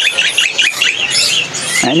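Caged songbirds chirping: a quick run of short, high chirps that sweep down in pitch, bunched in the first second and a half.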